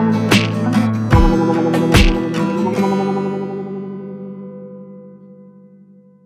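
Background music: an acoustic guitar strums a few chords, then the last chord rings on and slowly fades out.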